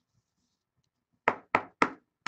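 Three sharp knocks about a quarter second apart, a stack of trading cards tapped against the tabletop.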